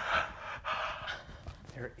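A person's breathy gasp, in two pushes over about a second and a half.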